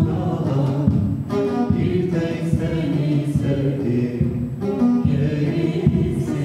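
A man sings a Turkish folk song and accompanies himself on a bağlama, a long-necked Turkish lute, plucking it in quick strokes.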